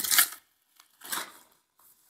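Packaging rustling as a small wrapper is opened by hand and a boxed item is pulled out, in two short bursts: one at the start and another about a second in.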